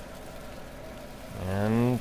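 Fan running steadily as its exhaust air fills a lightweight plastic trash bag held open on a frame, a bag-inflation test of the fan's airflow. In the last half second a louder hum rises slightly in pitch.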